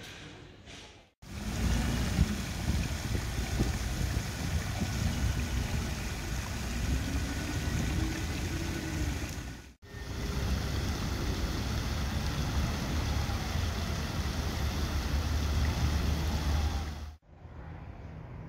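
Public fountain's water jet splashing into its stone basin: a loud, steady rushing noise. It starts abruptly about a second in, breaks off for a moment about ten seconds in, and stops abruptly near the end.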